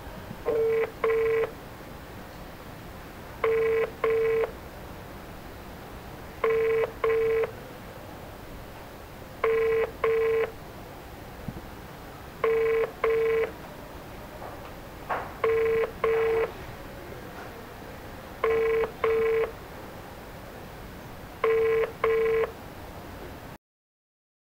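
Phone ringback tone of an outgoing call: a pitched double beep repeated every three seconds, eight times in all, the sign that the called phone is ringing and has not been answered. It cuts off suddenly near the end.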